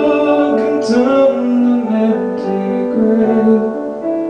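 Roland RD-700SX digital stage piano playing sustained chords, with a man singing along.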